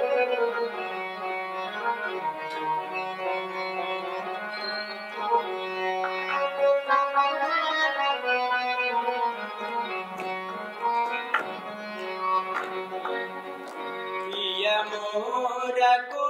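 Harmonium playing a melodic interlude in a Bhojpuri nirgun folk song, held reedy notes stepping from pitch to pitch, with a few sharp percussive strikes.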